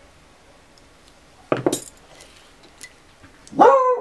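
A dog barking twice: a short bark about a second and a half in, then a longer, pitched bark near the end.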